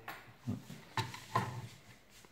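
A man's voice in short bursts: one quick word, then two brief murmured sounds, with a light click about a second in.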